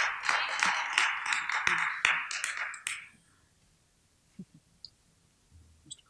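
Audience applauding, dying away about three seconds in, followed by a few faint knocks.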